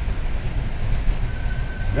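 Steady low rumble of a bus's engine and road noise, heard from inside the passenger cabin.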